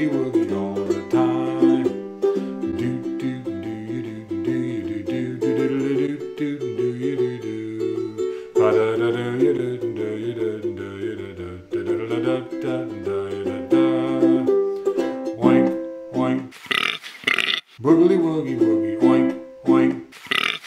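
Ukulele playing an instrumental break in a swing-style novelty tune, a run of picked and strummed notes over a moving bass line. Near the end come several short, sharper bursts.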